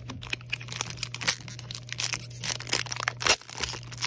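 Foil wrapper of a Panini Mosaic soccer card pack crinkling and being torn open in the hands, a dense run of sharp crackles.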